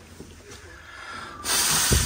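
A person blowing out hard toward a birthday cake: one short puff of breath about half a second long near the end, the air striking the microphone with a low buffet.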